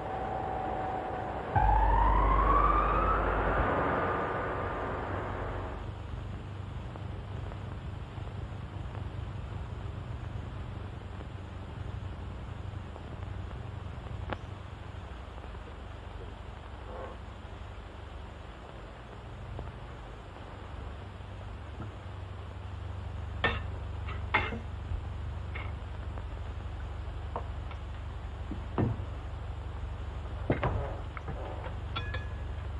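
A sudden loud siren-like wail about two seconds in, rising in pitch and fading away over the next few seconds. After it comes a steady low hum with a few faint knocks near the end.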